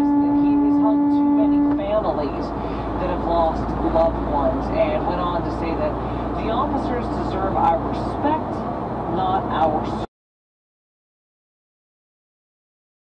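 A vehicle horn held in one steady tone, stopping about two seconds in, over the low rumble of a truck cab. Cab rumble and indistinct voices follow, then the sound cuts off suddenly near the end.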